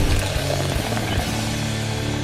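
Intro theme music that settles into a held, ringing chord.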